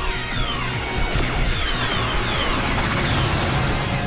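Cartoon battle soundtrack: action music under a dense mix of sound effects, with many short tones falling in pitch over a steady low rumble.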